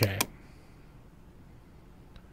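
A single computer mouse click clicking OK in a dialog, just at the start, then faint steady room tone.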